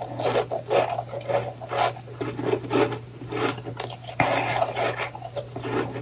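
Close-miked chewing of a powdery ice ball: repeated crunches at an irregular pace, the loudest burst about four seconds in, over a steady low hum.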